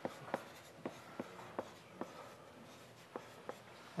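Chalk writing on a blackboard: a run of faint, sharp, irregularly spaced taps as strokes are written.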